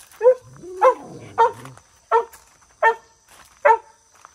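A dog barking six times in a steady series, about one bark every 0.7 seconds. A lower, drawn-out growl-like rumble runs under the first three barks.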